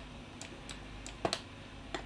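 About five separate light clicks from computer keys and mouse buttons, two of them close together just past the middle, over a faint steady low hum.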